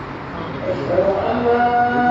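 Quran recitation: a man's voice begins a long, steady chanted note about a second in, held without a break over a background murmur.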